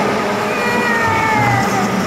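A high-pitched, drawn-out voice-like sound sliding slowly down in pitch, over a low steady hum.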